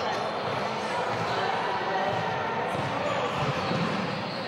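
Court and crowd sound of an indoor basketball game in play: a steady wash of crowd noise in the hall, with the ball and players' shoes on the court.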